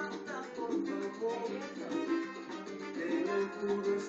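Salsa music playing with a steady beat.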